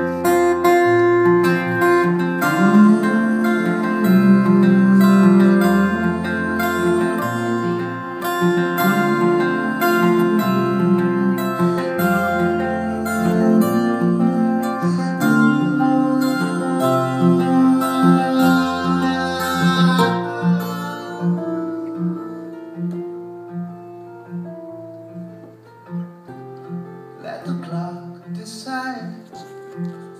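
Acoustic guitar playing an instrumental break of a song live: full, ringing chords over deep held low notes that thin out to quieter, sparser playing about two-thirds of the way through. A singing voice comes back near the end.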